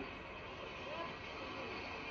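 Faint distant voices over a steady low noise from an old camcorder recording, heard played back through a TV speaker.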